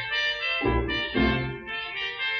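Instrumental orchestral introduction to a song, with brass prominent in the melody and bass notes falling on the beat about twice a second.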